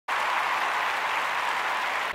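Steady applause that starts suddenly and cuts off after about two seconds.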